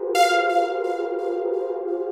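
Instrumental happycore electronic music: a beatless passage of sustained synthesizer chords, with a bright new synth note struck just after the start and held.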